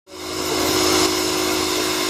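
Steam hissing steadily from a 1931 Yorkshire Engine Co. 15-inch gauge steam locomotive standing at the platform. The sound fades in at the start.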